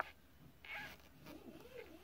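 A single sharp click, a button press on the Tech 2 scan tool's keypad, then a faint wavering tone that rises and falls over the second half.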